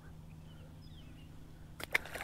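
A small crappie tossed back by hand hits the lake with a brief splash near the end. Before it, faint bird chirps over quiet outdoor background.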